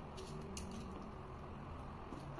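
Faint handling noise from a cardboard laptop box being moved on its foam packing tray: a few soft clicks in the first half second, over a low steady room hum.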